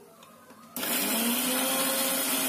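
Electric mixer grinder (mixie) switched on about three-quarters of a second in, starting suddenly and then running loud and steady at full speed, its motor whine edging up in pitch and then holding as it grinds in a stainless-steel jar.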